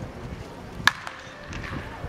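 A wooden baseball bat cracking against a pitched ball on a swing: one sharp crack about a second in, with a short ring after it.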